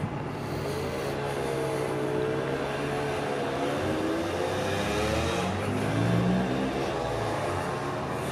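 A motor vehicle engine running, its pitch slowly dipping and rising, with an engine note climbing in pitch near the end.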